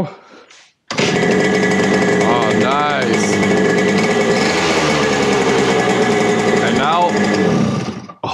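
Yamaha RD50DX's 50cc single-cylinder two-stroke engine, now on an HPI 2Ten electronic ignition, firing up suddenly about a second in and running at an even idle with the choke off, then cutting off just before the end.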